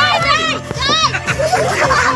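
Excited children shouting and cheering together over steady background music.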